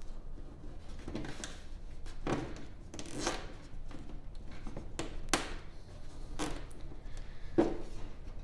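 Zip ties being worked on a wire by hand: a few short rasping scrapes, then several sharp clicks.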